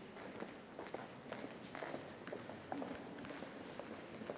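Footsteps of several people walking, women's high heels clicking irregularly on a stone floor.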